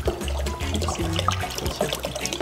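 Background music with a low bass line; beneath it, water being poured from a glass jug into a bowl.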